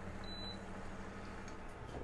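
Portable induction cooktop's control panel giving one short high beep as its button is pressed to switch it off, over a steady low hum.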